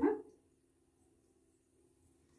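A woman's voice speaks a couple of words at the very start, then near silence with a faint steady low hum.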